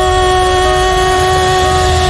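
A voice sings one long held note over orchestral trailer music with a deep bass rumble. The note stays level at first and starts to waver slightly near the end.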